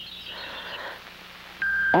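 Faint soundtrack hiss with a low steady hum in a gap in the narration. Near the end a steady high electronic tone comes in, the start of the film's background music.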